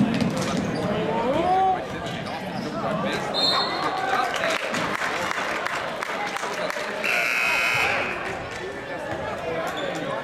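Basketball game sounds in a gym: a ball dribbling on the hardwood floor and spectators' voices. About seven seconds in, a high, steady tone lasts about a second, a referee's whistle stopping play.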